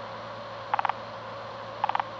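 Radio receiver audio: steady static hiss, with a short burst of four or five rapid beeps twice, about a second apart. The beep bursts are the coded pulses of a radio telemetry transmitter tag being picked up.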